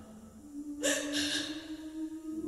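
Slow song in a pause between sung lines: a low held note and a sharp breath taken a little under a second in.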